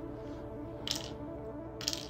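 Background music, with two light metallic clinks about a second apart as small metal earring findings (fishhook ear wires and jump rings) are handled.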